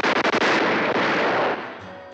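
Cartoon explosion sound effect: a sudden loud blast with rapid crackling that fades after about a second and a half.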